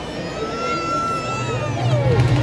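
A person's long, drawn-out call in a crowd, held on one pitch for over a second and then falling away, over crowd noise. A low hum builds near the end.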